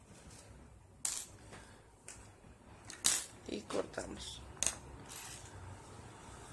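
Small metal key ring on a crocheted coin purse clinking as the purse is handled: three sharp clicks, about a second in, at three seconds and again a little later.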